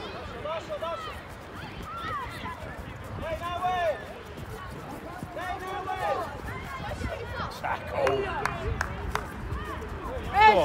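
Scattered distant shouts and calls from young footballers on the pitch, short high-pitched cries every second or so, over a steady low background noise.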